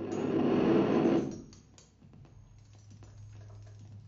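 Free improvisation on drums, double bass and live electronics. A loud grainy noise swells for about a second and then dies away, leaving sparse light clicks and taps over a steady low hum.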